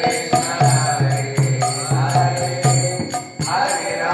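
A man chanting a devotional kirtan melody while striking small brass hand cymbals (kartals) in a steady rhythm, their ringing jingle laid over the voice.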